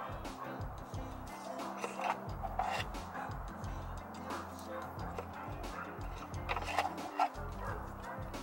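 Background music with a steady bass line, over short scratchy handling noises as electrical tape is wrapped around a wiring harness.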